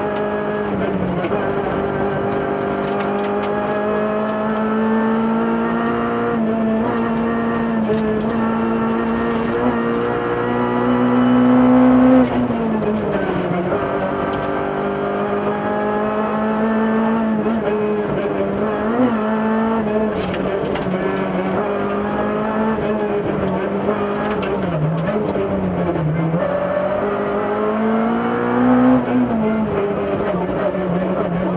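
Rally car engine heard from inside the cabin, running hard at high revs; the pitch climbs to a peak about twelve seconds in and drops sharply at a gear change, then dips and briefly rises again near the end as the car slows.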